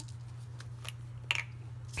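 Faint handling sounds of paper and a glue bottle on a craft table: a couple of light clicks and one brief rustle about a second and a half in, over a steady low hum.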